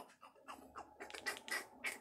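Quiet, irregular clicks and light handling noise: buttons on a handheld remote being pressed, several presses over about two seconds.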